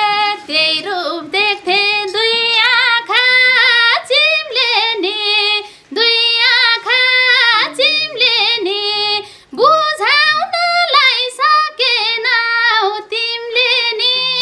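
A woman singing a Nepali dohori folk song solo, one voice with no instruments, in long ornamented phrases with brief breaths about six and nine and a half seconds in.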